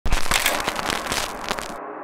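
Dense, loud crackling noise with many sharp pops, strongest at the very start and easing off, cut off suddenly near the end, where a steady ringing tone takes over.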